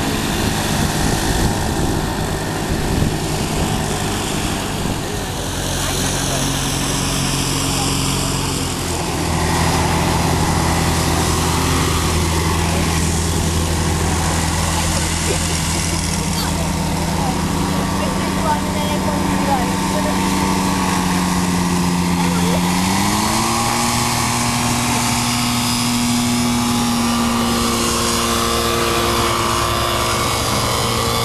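Microlight aircraft engine running on the ground, a steady tone that gets louder about nine seconds in and rises in pitch a little after twenty seconds as it is revved up, then holds at the higher speed.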